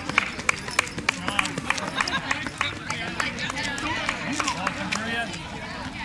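A spectator clapping steadily, about three claps a second, for the first two seconds. After that comes indistinct chatter from a crowd of voices.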